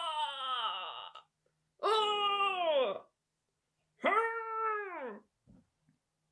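A woman's voice giving three long wordless cries, each about a second long and sliding down in pitch at the end, with short gaps between them.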